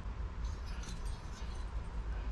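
Quiet workshop background: a low steady hum with a few faint ticks and rustles as the cast-iron scooter cylinder is turned in the hands.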